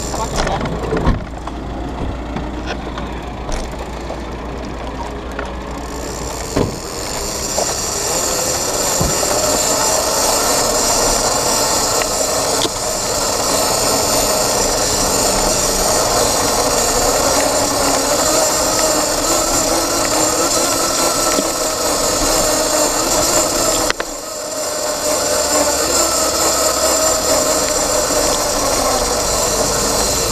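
Motorcycle engine heard from a camera mounted on the bike: idling with knocks and clicks of handling for the first few seconds, then running steadily at a constant note as the bike moves off about six seconds in, with a brief drop in level late on.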